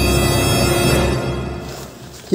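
Background music of sustained tones over a low drone, fading out over the last second.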